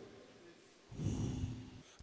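A woman gives one breathy, grunting huff through pushed-out lips, close into a handheld microphone. It lasts about a second and comes after a moment of near silence.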